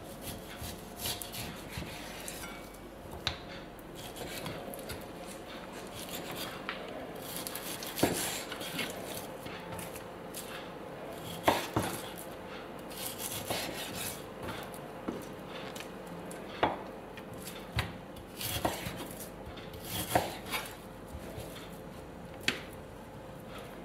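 A kitchen knife slicing through a raw pork neck on an end-grain wooden cutting board, with irregular knocks of the blade and meat on the board, a few of them sharper than the rest.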